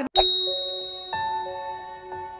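A bright chime is struck just after the start and rings on, slowly fading. About a second in, soft sustained bell-like notes of outro music join it.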